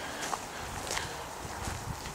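Faint, irregular footsteps of someone walking over the ground of the orchard, under a steady outdoor hiss.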